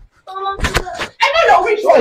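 A single sharp bang a little under a second in, amid raised, shouting voices of an argument.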